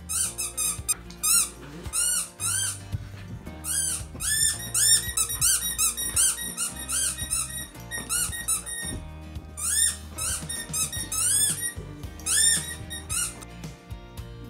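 Rubber squeaky dog toy squeaked rapidly over and over in runs of quick, high squeaks with brief pauses between runs, as a dog plays with it.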